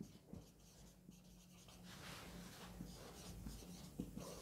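Faint marker-pen strokes on a whiteboard as words are written, a run of light short strokes mostly in the second half.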